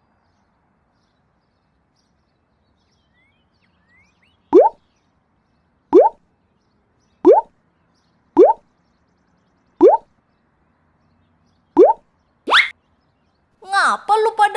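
Cartoon sound effects: after about four seconds of near silence, a series of short 'bloop' pops that each rise quickly in pitch, six of them one to two seconds apart, then a seventh, higher and longer one near the end.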